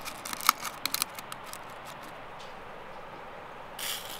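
A quick run of light, sharp clicks and taps in the first second or so, then a steady background hiss, with a short brushing sound near the end.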